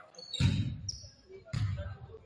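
Basketball bouncing twice on a hardwood gym floor, about a second apart.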